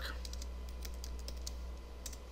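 Computer keyboard being typed on: a scatter of faint key clicks as a word is typed, over a steady low electrical hum.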